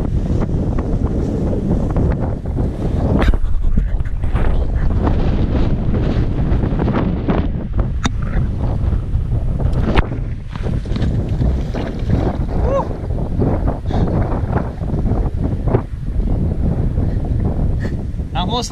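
Wind buffeting the camera microphone: a loud, gusting rumble. A few sharp knocks stand out, about three seconds in, around eight seconds and around ten seconds.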